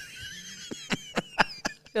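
People laughing: a high-pitched laugh with a string of short breathy bursts, about four a second.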